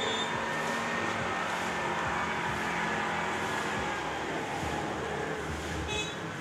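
Shallow stream rushing over rocks: a steady noise of running water.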